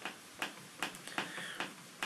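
Light, fairly regular clicks, about two or three a second, as a small silver-plated piece is rubbed with cotton wool and knocks against a stainless steel tray, with a faint rubbing hiss between them.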